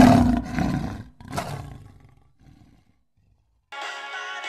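Big-cat roar sound effect for a logo intro: one loud roar, then a second shorter roar about a second later that fades away. Music begins near the end.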